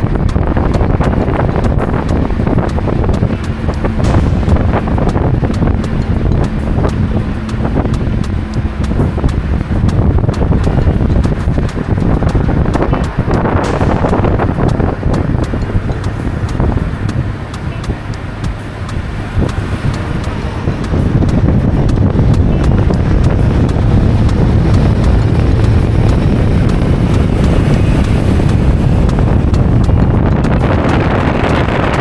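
Wind rushing and buffeting on the microphone of a camera in a moving car, over the car's road noise. The rush eases for a few seconds past the middle, then comes back stronger.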